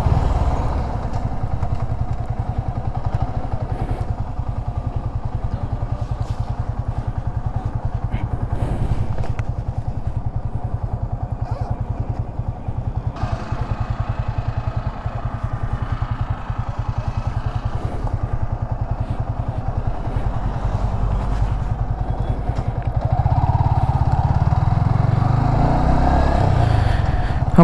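Yamaha motorcycle engine idling with a steady, rapid pulse, then running louder as the bike pulls away near the end.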